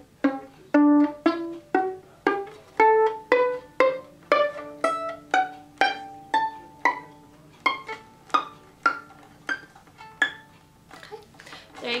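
Violin playing a three-octave G major scale, climbing note by note up to the top G, about two notes a second; each note starts sharply and fades quickly. The scale stops a little after ten seconds in.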